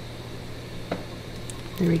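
Quiet kitchen with a steady low hum, and one faint click about a second in, while caramel sauce is squeezed from a plastic squeeze bottle over coffee foam. A woman's voice starts right at the end.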